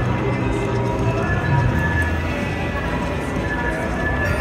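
Buffalo video slot machine playing its electronic music and sound effects during free-game spins, over a background of casino chatter.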